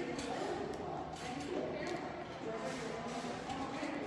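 Indistinct chatter of other shoppers' voices over the steady background noise of a large store.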